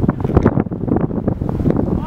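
Wind buffeting the camera's microphone: a loud, gusty low rumble.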